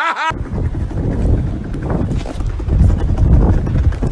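Loud, steady low rumbling noise on a phone recording, starting abruptly about a third of a second in.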